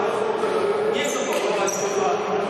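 Basketball gym ambience: indistinct voices of players and spectators, a basketball bouncing on the court, and a few short high sneaker squeaks on the floor in the second half.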